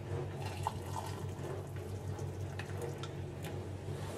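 Hot water being poured from an electric kettle into a ceramic mug, a steady filling sound under a low hum.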